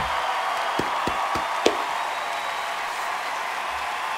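Studio audience applauding as a steady wash of clapping, with four short sharp knocks about a third of a second apart in the first half.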